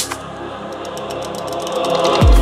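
Organic house DJ mix in a breakdown: the kick drum drops out, leaving held synth chords and light ticking percussion. The sound swells gradually, building toward the beat's return.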